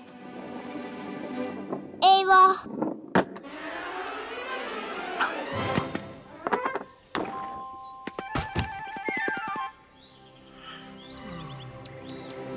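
Cartoon soundtrack: background music with comic sound effects, including a few sharp knocks and a quick run of clicks about seven to nine seconds in.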